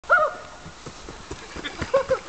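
A short, loud call that rises and falls at the very start, followed by a run of soft, quick footfalls on the dirt forest path.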